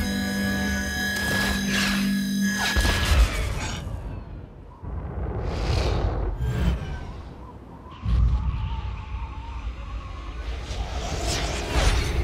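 Action-film soundtrack mix: music with whooshing fly-by effects and deep rumbling booms, the whooshes sweeping past about midway and again near the end.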